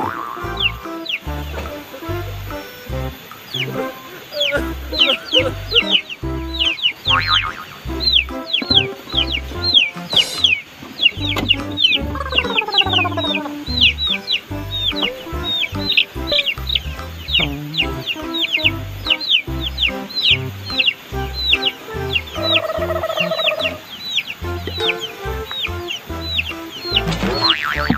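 A young chick peeping over and over, short falling chirps a few a second, over background music with a steady beat.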